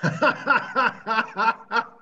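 A man laughing over a video call, in a run of about six quick pulses.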